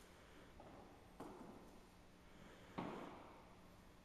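Quiet room with two soft knocks, one a little over a second in and a louder one near three seconds, each dying away in a hollow echo.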